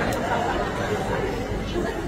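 Several people chattering at once, overlapping voices with no single clear speaker.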